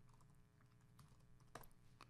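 Faint keystrokes on a computer keyboard: a few light clicks, the clearest about a second and a half in.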